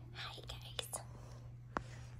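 A woman softly whispering in the first second, with a few sharp clicks over a steady low hum.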